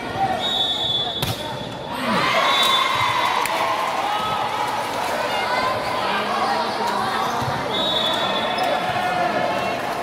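A referee's whistle blows for about a second, a volleyball is struck, and a crowd then bursts into cheering and shouting as a point is scored. A second short whistle sounds near the end.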